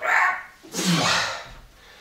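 A man's forceful breaths of effort during a barbell squat: a short puff, then a longer voiced exhale about a second in as he rises from the bottom of the squat.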